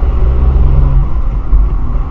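Car engine and road rumble picked up inside the cabin by a dashcam microphone, a loud, steady low drone as the car gathers speed at low speed.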